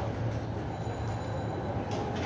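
Steady low background rumble with no distinct event in it.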